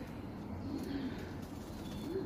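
Domestic pigeons cooing faintly and low in a loft.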